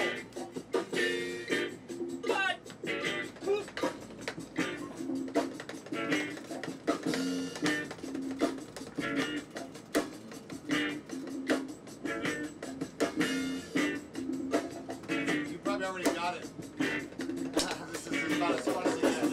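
Unamplified electric guitars and bass played in an informal warm-up jam, short riffs and chord stabs repeated over and over, with drumsticks tapping along.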